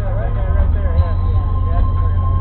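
Steady low rumble inside a car's cabin as it creeps in traffic, with a faint wavering voice over it.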